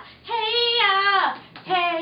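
A woman singing a wordless line unaccompanied: a held note that slides down in pitch at its end, a short breath, then the next note beginning near the end.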